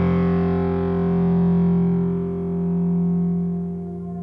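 Hard rock song ending on a held, distorted electric guitar chord that rings out, its high overtones fading away while the low notes sustain.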